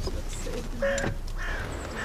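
Outdoor birds calling: several short, harsh calls starting about a second in.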